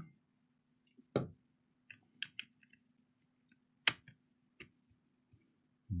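Scattered light clicks and knocks as a laptop battery pack is set into the open laptop chassis and its connector plugged into the motherboard, the two sharpest about a second in and near four seconds.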